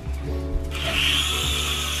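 Small electric propeller motors of a flying toy spinning up about a second in, then holding a steady high whir.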